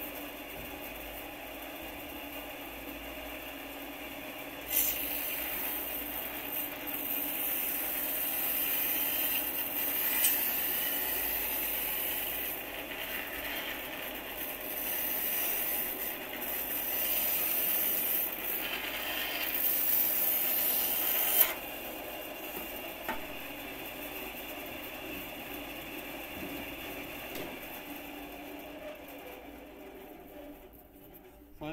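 A cheap bandsaw running and cutting a strip from a pink foam insulation board: the blade makes a steady hiss through the foam from about five seconds in until about twenty-one seconds in, when the cut stops abruptly. The saw keeps running after the cut, quieter, fading near the end.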